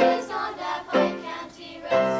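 Children's choir singing, with a new sung phrase starting about once a second.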